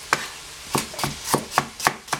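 Chinese cleaver chopping celery stalks on a plastic cutting board, about six sharp chops as the blade cuts through the stalk and strikes the board. The first chop stands alone, and the rest come quicker in the second half.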